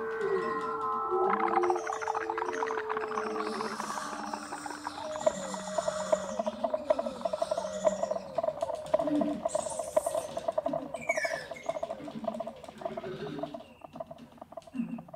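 Improvised duo music of bird-like and whale-like calls: a held tone for the first few seconds, then a fast, pulsing trill with high chirps over it, fading near the end.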